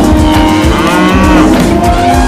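Cattle mooing over the rumble of a running herd's hoofbeats, with one call rising and falling in pitch about a second in.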